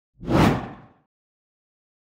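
A single whoosh sound effect that swells quickly and fades out within about a second, the treble dropping away as it fades.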